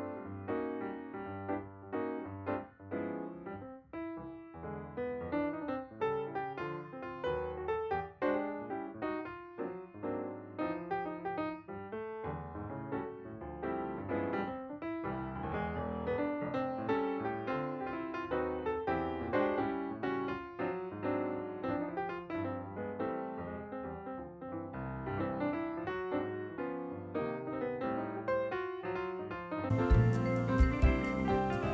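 Background piano music: a steady flow of single notes and chords.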